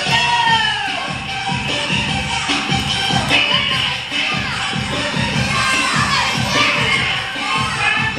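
Dance music with a steady beat, with a crowd of young people shouting and cheering over it.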